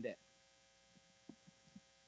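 Near silence with a steady electrical mains hum, after a man's spoken word ends right at the start; a few faint ticks about halfway through.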